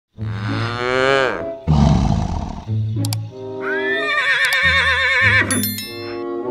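Music mixed with a string of animal call sound effects: a wavering call that falls in pitch at the start, a short low, noisy burst, then a long wavering call. A few sharp clicks come near the end.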